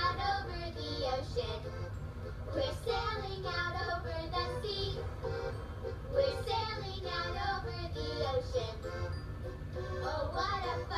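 A children's sing-along song: young voices singing together over a steady instrumental backing.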